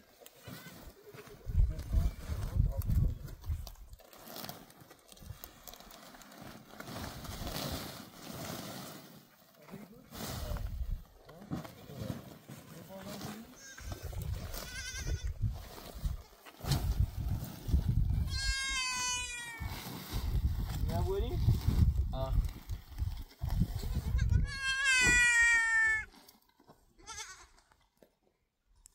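A goat bleats twice, a long quavering call about eighteen seconds in and another about twenty-five seconds in, over repeated bursts of low rumble.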